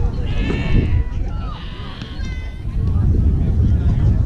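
High-pitched children's voices shouting several drawn-out cheers or calls, one after another, over wind rumble on the microphone.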